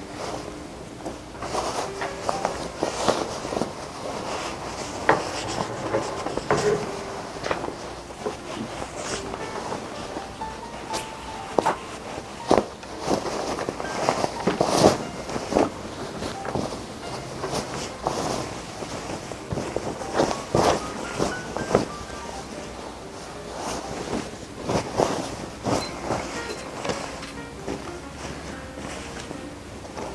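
Soft background music under irregular rustling and crumpling of cotton fabric as a sewn bag is pulled right side out through its lining.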